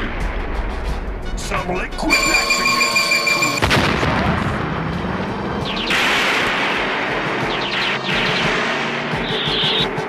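Cartoon sci-fi sound effects over background music: a steady electronic tone about two seconds in, then crackling energy-weapon blasts and booms from about six seconds in.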